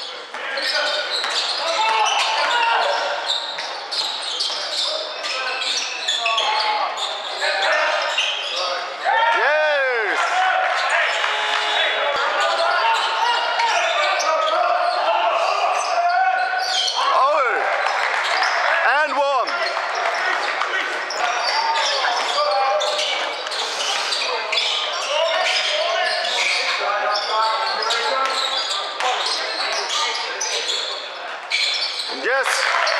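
A basketball bouncing on a hardwood court in a large, echoing sports hall, with players' and spectators' voices and calls throughout. A couple of short sliding squeals come about ten seconds in and again just before the twenty-second mark.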